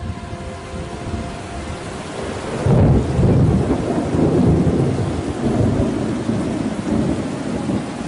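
Rumbling, hissing noise like thunder with rain. It grows louder and jumps up about three seconds in, then stays loud with a deep rumble.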